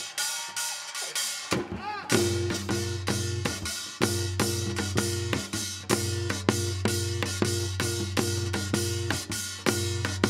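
Live Korean traditional ensemble music: a drum struck in a fast, even beat of about four strokes a second over steady low sustained tones. About a second and a half in the playing thickens, with a melody note bending upward.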